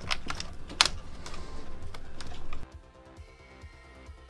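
Irregular clicks and handling noise of a UE Megaboom's fabric cover being clipped back onto its plastic housing, with one sharper click just before a second in. After about two and a half seconds the handling stops abruptly and only quiet background music remains.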